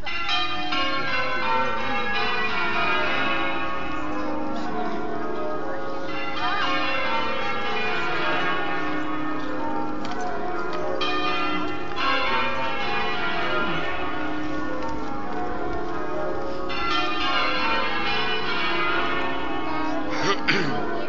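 Church bells pealing, many bells struck one after another with long overlapping ringing tones. Fresh rounds of strikes come every five or six seconds.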